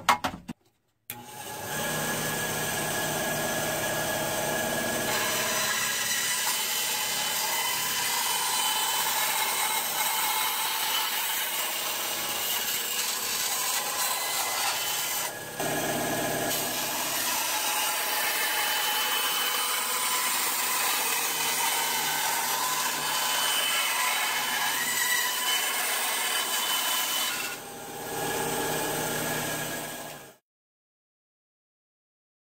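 Bandsaw running and cutting through the plastic body of a Nerf crossbow: a steady whirring rasp that starts about a second in, with two short drops in level, one about halfway and one near the end.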